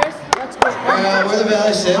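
Two sharp clicks in quick succession, then a young man talking into a microphone over the PA.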